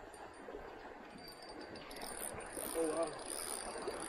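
Low, steady background of flowing creek water, with a brief faint voice about three quarters of the way through.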